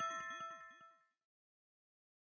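Tail of a chiming logo-sting jingle: several ringing tones fading away within the first second, followed by dead digital silence.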